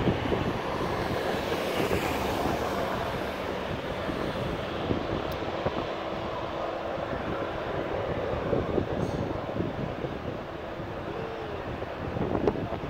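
Wind buffeting the microphone over the distant rumble of a Boeing 737 jet on final approach. The sound is a steady noise with gusts and no sharp events.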